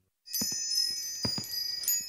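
Metal tube wind chimes jingling: several high ringing tones overlapping and sustaining, starting about a quarter second in, with two soft knocks underneath.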